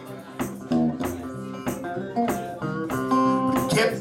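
Electric guitar playing a blues passage of picked notes and chords that ring out, between sung lines.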